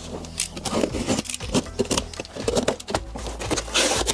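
Cardboard shipping case being cut open with a utility knife and its flaps pulled back: an irregular run of short scrapes, clicks and cardboard rustles, with a brief louder rasp near the end.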